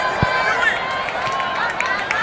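A crowd of children calling and chattering at a football penalty kick, many high voices overlapping. There is one dull low thump about a quarter of a second in.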